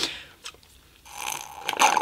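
Coffee sucked up through a straw from a glass: a short slurp of liquid and air that starts about a second in and gets louder near the end.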